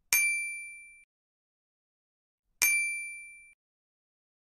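Two bright ding chime sound effects, about two and a half seconds apart, each ringing out and fading over about a second. They are the correct-answer chime played as a green tick appears beside an answer.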